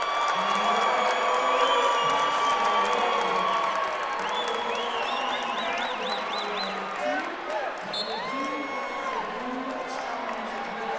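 Indoor arena crowd noise at a wrestling tournament: many overlapping voices talking and shouting, with cheering and several long held calls. No single sound stands out.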